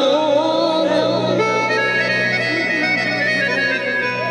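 Harmonium playing, its reedy notes held steady over a low drone, after a man's wavering sung line trails off about a second in.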